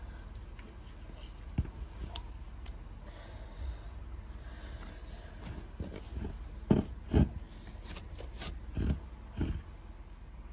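Pink and white SlimyGloop slime being squished and pulled by hand, giving a few short, wet squelching pops. The loudest two come about seven seconds in and two more near the end.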